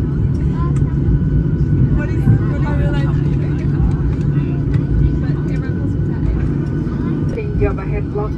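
Cabin noise of a jet airliner rolling along the runway after landing: a steady low rumble with faint voices over it. A cabin announcement begins near the end.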